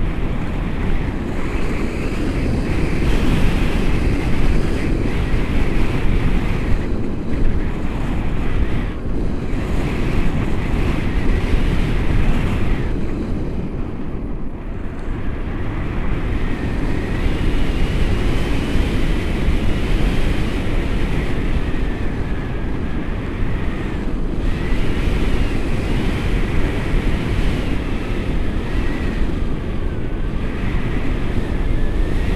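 Steady wind noise on the camera's microphone from the airflow of a tandem paraglider in flight.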